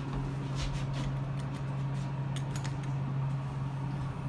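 ThyssenKrupp Signa 4 elevator car travelling down, heard from inside the cab: a steady low hum from the drive, with a few light clicks and rattles.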